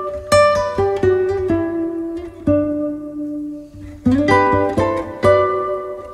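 Background music on a plucked string instrument like an acoustic guitar, with single notes picked one after another and one longer held note about halfway through.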